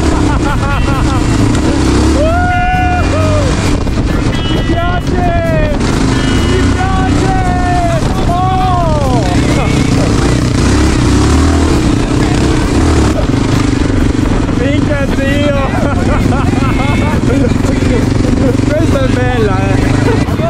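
Off-road enduro motorcycle engine running steadily while riding, with voices calling out over it.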